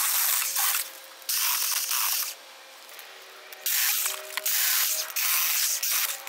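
Jeopace 6-inch battery mini pruning chainsaw cutting thin woody stems and brush. It runs in four bursts of about a second each, with short gaps between, and a faint motor whine underneath.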